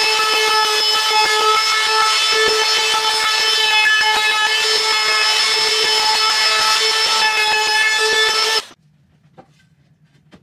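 Ryobi cordless trim router running at a steady high whine as it routes along a wooden board. The whine cuts off sharply near the end.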